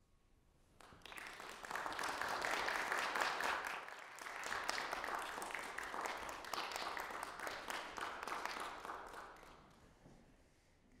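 Audience applauding in a hall. It starts about a second in, holds steady, and dies away near the end.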